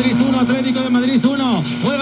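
A male commentator's Spanish-language football play-by-play coming from a tabletop radio's speaker, his voice riding over a steady low hum.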